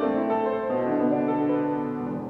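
Piano trio of violin, cello and piano playing a classical chamber piece, the strings holding sustained bowed notes over the piano.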